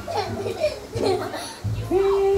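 Young children's voices: several short, wavering, high-pitched calls and babble as they play.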